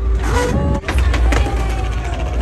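Skateboard wheels rolling over paving, a steady low rumble, with scattered sharp clacks and the voices of an onlooking crowd.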